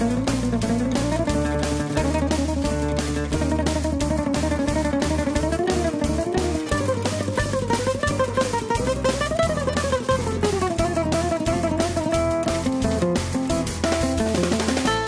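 Acoustic guitar playing fast melodic runs that climb and fall, over a backing track with a steady beat and bass.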